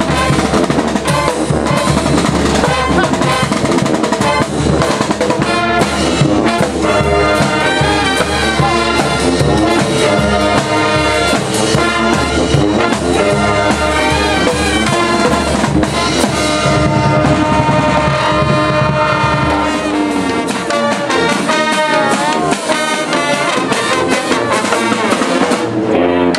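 Marching band playing: saxophones, clarinets and sousaphone over snare drum, crash cymbals and bass drum. About twenty seconds in the deep bass drops away for a few seconds, leaving the horns and lighter percussion.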